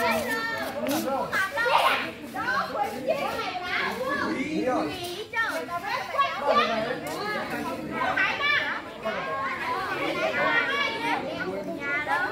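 A crowd of children chattering and calling out over one another, many high voices at once with no single speaker standing out.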